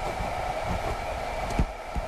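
Ballpoint pen writing on paper, faint scratching strokes over a steady background hiss.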